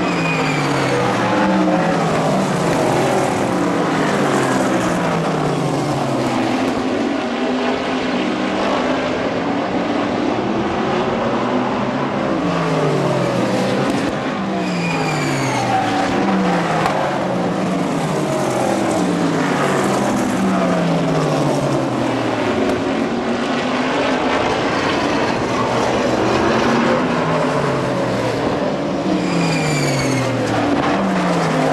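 A field of sprint cars racing laps, their V8 engines at high revs, the pitch falling again and again as cars pass by one after another.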